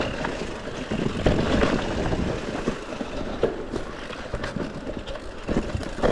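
Mountain bike descending a rough dirt trail: tyres rolling over dirt and stones, with the bike rattling and knocking over bumps in quick, irregular hits.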